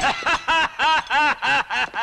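A man laughing loudly in a long, rhythmic run of 'ha' syllables, about three a second.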